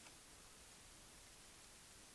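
Near silence: a faint, steady background hiss with no distinct sounds.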